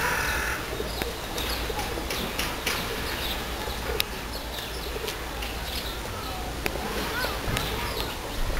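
Outdoor birds calling: a harsh call ends about half a second in, then scattered short chirps and thin whistles over steady background noise. One sharp click about four seconds in.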